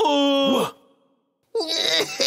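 A cartoon character's voiced groan or sigh, held for under a second and falling in pitch as it breaks off. After a short silence, more grunting voice sounds begin near the end.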